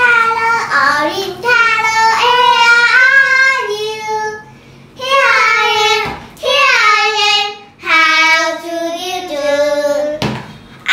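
A young girl singing a simple children's colour song, in held notes that step up and down, in about four phrases with short breaks between them.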